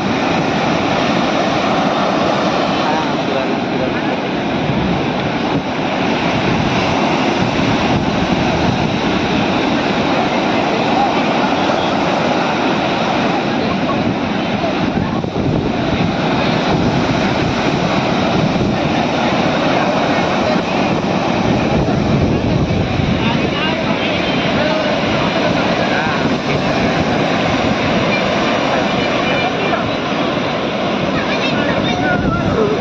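Ocean surf breaking steadily on a sandy beach, a continuous rushing noise with no let-up.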